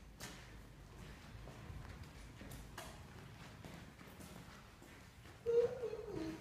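Quiet room tone with a few faint footsteps and light clicks on a hard floor. A voice starts briefly near the end.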